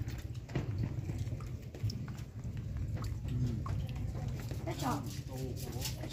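Faint voices over a steady low rumble, with a few light clicks.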